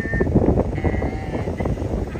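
Wind buffeting and road rumble past an open car window on a descent, with three short high-pitched squeals of about half a second each laid over it.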